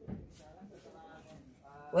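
A pause in speech: quiet room tone with a faint voice in the background, then right at the end a boy's voice starts up again with a drawn-out vowel.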